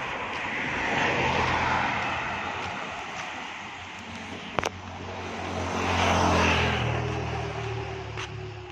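Motor vehicles passing close by on a quiet road, one after another: a swell of traffic noise peaking about a second in, then a louder pass about six seconds in whose engine note drops as it goes by. A single sharp click about halfway through.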